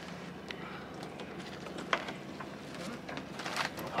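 A small boat's outboard motor idling as a quiet, steady low hum, with a few faint clicks and knocks as a crab trap's rope is hauled in hand over hand.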